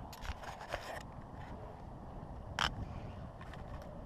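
Scattered sharp clicks and knocks from the fishing rod and reel being handled in an aluminium boat while a large fish is played. A quick cluster of clicks comes in the first second and one louder knock about two and a half seconds in, over a low rumbling noise.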